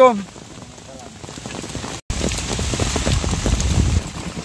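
Steady rain falling, an even hiss. About halfway through, the sound breaks off for an instant and comes back louder, with a low rumble under the rain.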